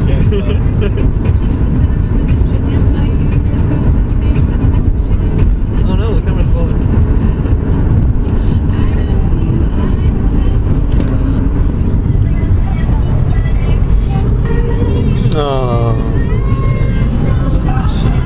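Steady low rumble of a car driving, heard from inside the cabin, with people's voices over it and a sliding pitched sound about fifteen seconds in.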